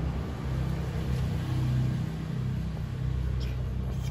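A steady low rumble.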